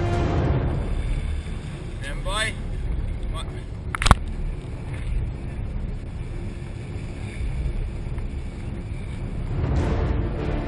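Wind buffeting the microphone and water sloshing around a camera at the sea surface. A brief rising call sounds about two seconds in, and one sharp knock about four seconds in.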